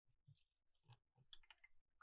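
Near silence, with a few very faint clicks and rustles of hands handling potted herbs.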